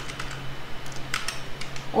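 Computer keyboard being typed on: a quick run of key clicks as a date is entered.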